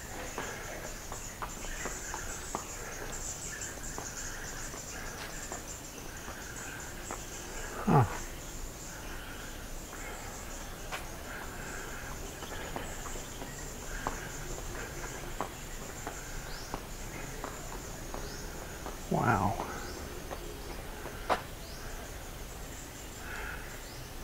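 Insects chirring steadily at a high pitch in the outdoor background, with scattered faint clicks. Two brief voice-like sounds stand out, about a third of the way in and again near the end.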